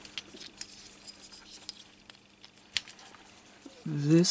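Faint scattered clicks and taps of multimeter test-lead probes and wires being handled, with one sharper click about two-thirds of the way through, over a faint steady hum.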